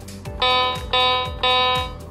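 MQ-6106 61-key electronic keyboard: the same note played three times in a row, each held about half a second, over a low beat repeating about twice a second.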